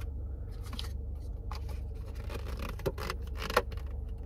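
Handling of an emptied paper takeout cup: several short crinkling scrapes and taps at irregular moments, over a steady low hum.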